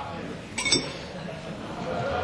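A single sharp clink of glassware with a short ringing tail, a little over half a second in, over the low background of a large hall.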